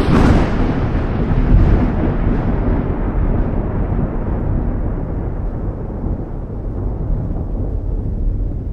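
Cinematic boom-and-rumble sound effect of an outro animation: a heavy boom right at the start, its hiss dying away over the first couple of seconds, then a steady low rumble.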